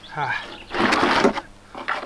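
Rough-sawn wooden board slid and scraped across another board: a loud scraping rush lasting about half a second, in the middle. It is preceded by a short pitched, wavering sound near the start.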